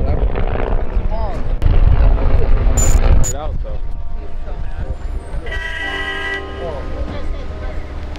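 Wind buffeting the microphone with indistinct voices for about three seconds, then city traffic and a horn sounding for about a second.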